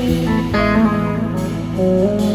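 Live band music led by guitar: sustained chords ringing, with a new chord struck about half a second in and another near the end.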